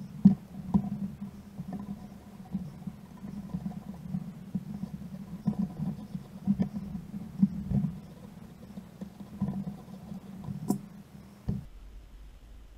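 Soft, irregular rustles and small clicks of hands working a fly-tying vise, wrapping lead wire and thread onto a bead-head hook, with one sharper click near the end. A steady low hum underneath stops shortly before the end.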